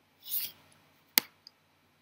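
A short soft rasp, then a single sharp computer mouse click a little after a second in, followed by a faint tick.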